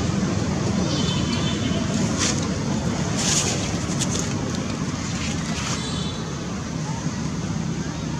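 A young long-tailed macaque giving short, high-pitched squealing cries, about a second in and again past the middle, over a steady low rumble, with a few brief noisy bursts in between.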